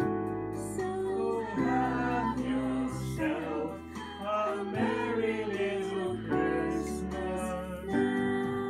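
Electronic keyboard playing chord accompaniment while a group of people sing along.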